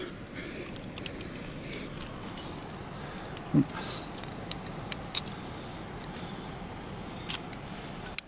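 Steady outdoor background noise of wind, creek and road traffic, with a few light metallic clinks of climbing gear (cams and carabiners on the harness).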